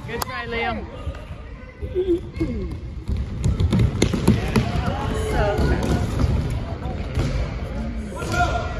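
A soccer ball being kicked and bouncing on a hardwood gym floor, with repeated short knocks and children's voices calling out, echoing in a large hall.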